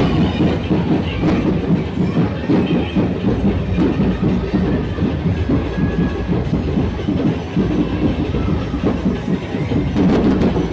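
Loud procession music made of fast, driving drumbeats in a dense rapid rhythm with heavy low end, running without a break.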